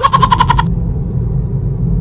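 Steady low road rumble inside a moving car's cabin. In the first half-second, a short, rapid, high-pitched pulsing sound, about a dozen pulses a second, cuts in and stops.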